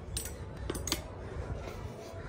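A few light clicks of a clothes hanger and jacket being turned on a shop display rack, over a low steady background hum.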